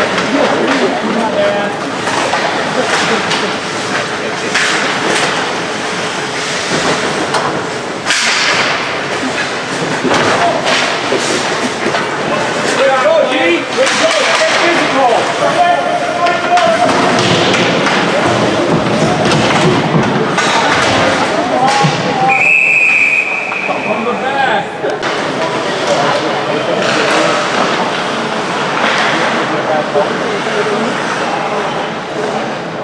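Ice hockey game heard from rinkside: spectators' voices and shouts over repeated knocks and thuds of sticks, puck and boards. About three-quarters of the way through comes one short, high referee's whistle blast.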